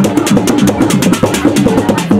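Somali niiko dance music driven by fast, dense drumming, with a pitched melodic line running over the beat.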